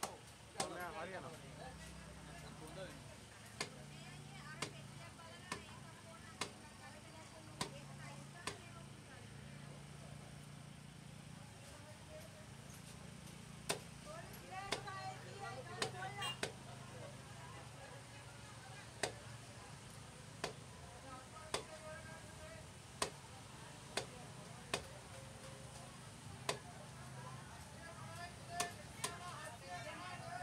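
Heavy knife chopping fish into chunks on a wooden log block: sharp chops about every second or so, with a pause of a few seconds about a third of the way through. A low steady hum and voices run underneath.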